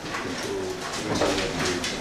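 A bird cooing: several short, low calls.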